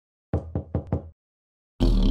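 Four quick, sharp knocks in a row, about a fifth of a second apart. Near the end a loud, low droning sound starts suddenly.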